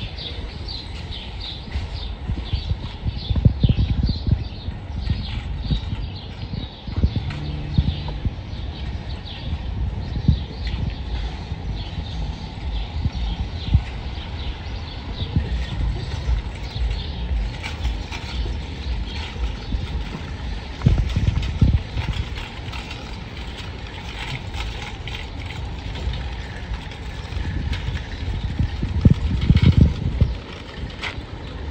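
A loaded metal shopping cart pushed over concrete and asphalt, its wheels and wire frame rattling and clattering unevenly.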